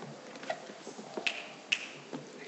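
A few scattered sharp clicks and taps, the two loudest about a second and a quarter and a second and three quarters in, over the steady low background noise of a large room.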